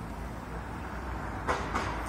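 Steady low rumble of city street background noise, with no distinct events until a short sound near the end.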